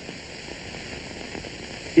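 Steady hiss of an old lecture recording's background noise during a pause in speech.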